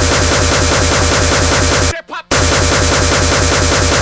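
Speedcore electronic music: distorted kick drums pounding very fast under a dense wall of noisy synths. About two seconds in the beat cuts out for a fraction of a second, a short rising sound in the gap, then comes straight back in.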